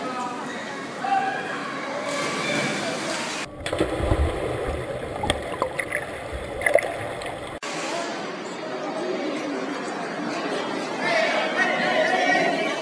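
Voices chattering and echoing around an indoor swimming-pool hall, with the splash of swimmers racing freestyle. In the middle, a few seconds of low rumble and scattered knocks cut in and out abruptly.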